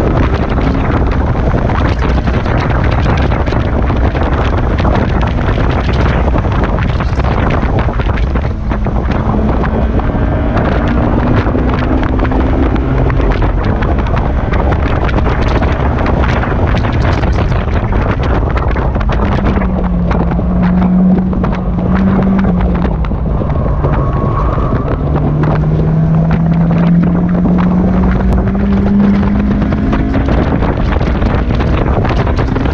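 Honda S2000 four-cylinder engine, fitted with an aftermarket header and single-exit exhaust, revving high around 7,000 rpm as the open roadster is driven flat out on track. Heavy wind buffets the microphone throughout. About twenty seconds in the engine note drops as the car slows for a corner, then it climbs again near the end.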